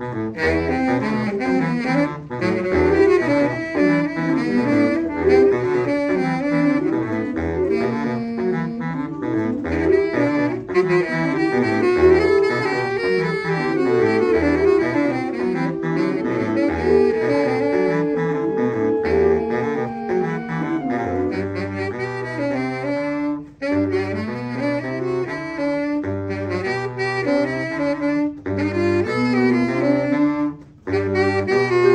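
Saxophone ensemble, including a baritone saxophone, playing a piece in several parts, the baritone carrying a moving bass line. In the last third the bass changes to short repeated low notes, with one brief break in the sound.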